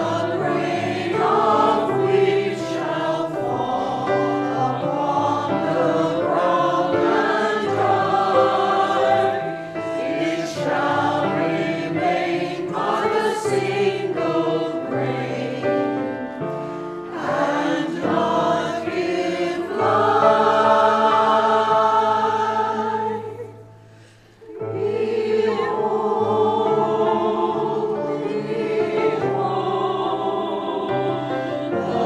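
Church choir singing a slow hymn, with one brief pause between phrases about three-quarters of the way through.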